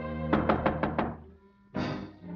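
About five quick knocks on a door over orchestral cartoon music. The music swells back in sharply near the end.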